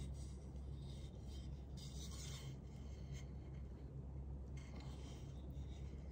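Faint handling noise as hands turn over unfinished wooden mandolin kit parts: light, irregular rubbing and rustling, over a steady low hum.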